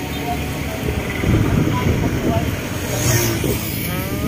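Steady rumble of passing road traffic, swelling a little from about a second in, with faint voices over it.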